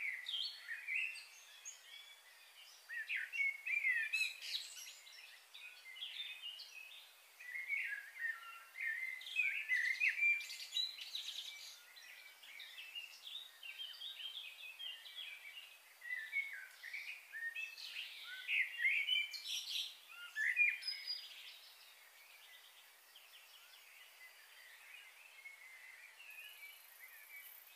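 Small birds singing and chirping: many quick, high, short notes in busy bunches, thinning out over the last few seconds, over a faint steady outdoor hiss.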